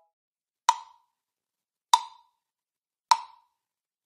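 Red plastic LP 1207 Jam Block, medium pitch, struck three times with a drumstick, evenly about a second apart; each hit is a sharp knock with a short ring.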